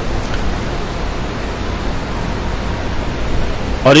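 Steady, even rushing noise with a low rumble underneath, filling the gap between phrases; a man's voice comes in right at the end.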